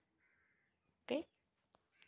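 A woman's voice saying a single short "Okay" about a second in, amid an otherwise near-silent pause.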